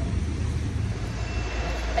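Steady low rumble of city street traffic under general outdoor noise.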